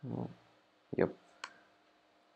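A single sharp click from a computer's mouse or keys, about a second and a half in.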